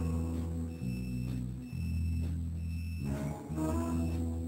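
Instrumental background music: sustained low bass notes that change about once a second, with short, repeated high tones above them.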